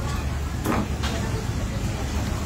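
Steady low rumble of background noise, with one short sip from a cup of milk tea about two-thirds of a second in.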